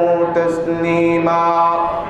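A man's voice chanting a melodic religious recitation on long held notes, stepping to a new note a little past halfway.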